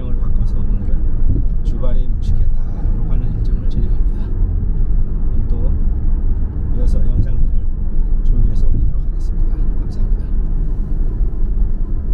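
Car driving through city traffic, heard from inside the cabin: a steady low rumble of engine and road noise, with a few scattered light clicks.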